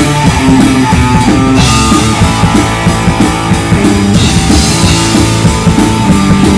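Live rock band jamming loudly without vocals: distorted electric guitar, bass guitar and a drum kit with crashing cymbals.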